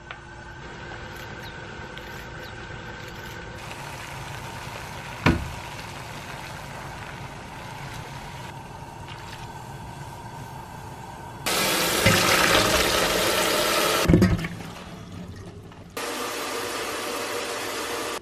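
Kitchen water sounds while somen noodles are cooked: a steady low hiss with a single knock about five seconds in, then a loud rush of running tap water for about two and a half seconds ending in a thump, and a softer run of water near the end.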